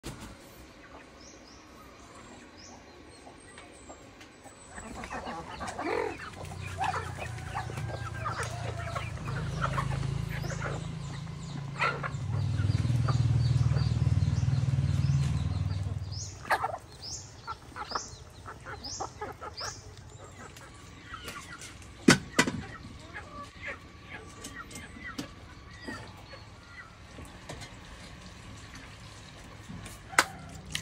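Chickens clucking with small birds chirping around them. A low droning hum swells in after about five seconds, is loudest near the middle, and fades away; one sharp knock comes later.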